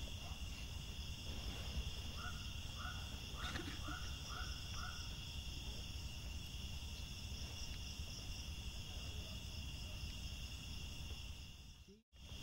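Steady high-pitched night chorus of crickets, with a short run of six quick repeated chirps from another small animal about two seconds in, over a low rumble.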